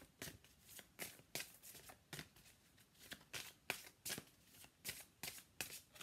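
A deck of oracle cards shuffled by hand: a faint run of short, irregular card flicks and snaps, about three a second.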